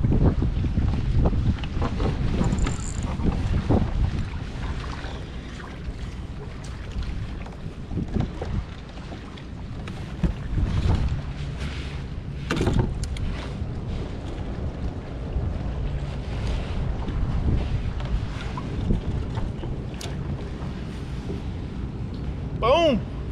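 Wind buffeting the microphone, with water lapping around a fishing kayak and scattered short knocks and rattles of gear being handled.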